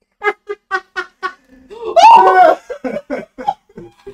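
People laughing hard: a run of short, rhythmic ha-ha bursts, then a loud, high laugh that rises and falls about two seconds in, followed by more short bursts.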